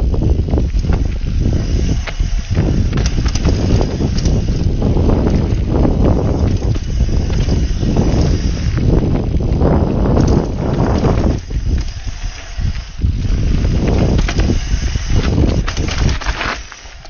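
Enduro mountain bike riding fast down a rough dirt trail: tyres running over dirt and stones, with frequent knocks and rattles from the bike over the bumps, under heavy wind rumble on the microphone.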